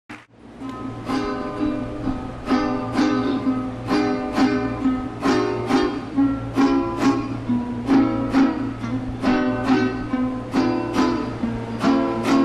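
Venezuelan cuatro strumming chords in a steady rhythm, about two strokes a second, over a steady low hum.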